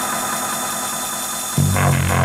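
Electronic dance music, drum and bass or a related style, from a mono off-air radio recording: the heavy bass line drops out, leaving a dense, buzzing synth texture, and thumps back in briefly near the end.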